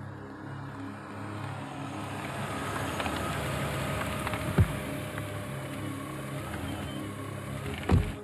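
A car driving in and passing close: a steady engine and tyre noise that swells through the middle. There is a sharp thump about halfway through and another right at the end.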